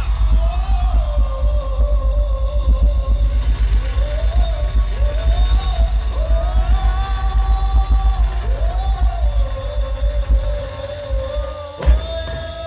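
Live band music played loud through a concert sound system: a heavy, fast bass beat under a melody that swoops up and holds long notes. The bass thins out about a second before the end.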